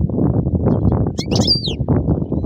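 A caged European goldfinch gives a few high chirps and a quick falling call about a second in. Throughout, a continuous dense low noise runs underneath and is the loudest sound.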